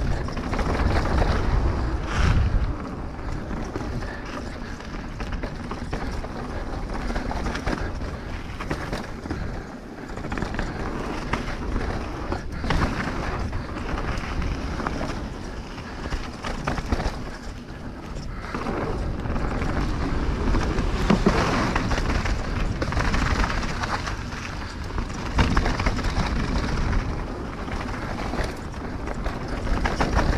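Mountain bike riding down a dirt trail: tyres rolling over packed and loose soil, with frequent knocks and rattles from the bike over bumps, and the noise rising and falling with speed.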